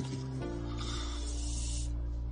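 Film background score: low sustained tones held steady, with a soft hissing noise joining about half a second in and cutting off suddenly near the end.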